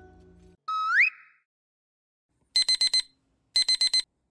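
Alarm beeping in two groups of four quick high beeps, about a second apart, in the second half, sounding the 5 a.m. wake-up time. Earlier, about a second in, a short rising whistle-like sound effect is the loudest sound, just after background music ends.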